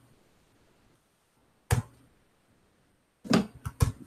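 Near silence on a video call, broken by one short sharp sound a little under two seconds in; a man's voice starts speaking near the end.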